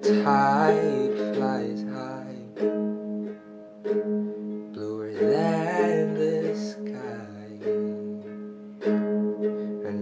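A man singing with a strummed acoustic string instrument under him, the chords steady while his voice glides through long notes near the start and again around the middle.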